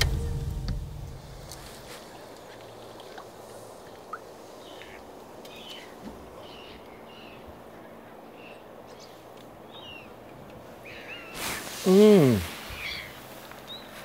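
Quiet outdoor lakeside background with faint, scattered high bird chirps. About twelve seconds in, a short, loud voice-like sound falls in pitch.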